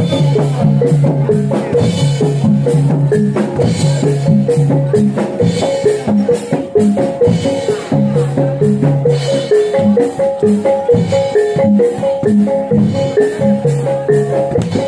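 Music for a jaran dor horse dance: kendang and jidor drums under a short, fast melody of pitched notes that repeats over and over.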